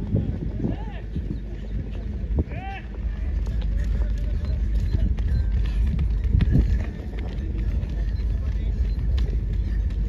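Running footsteps of hurdlers on a synthetic track, loudest as runners pass close about six seconds in, over a steady low rumble. A short shout rings out a few seconds in.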